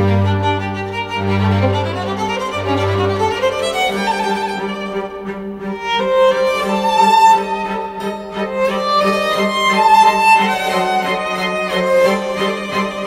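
Slow background music on bowed strings: a violin melody held over sustained lower notes, with deep bass notes dropping out about three and a half seconds in.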